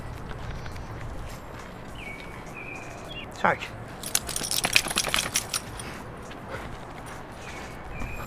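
A dog's collar tags jingling: a quick run of small metallic clinks lasting about a second and a half, around the middle, over a low steady background hum.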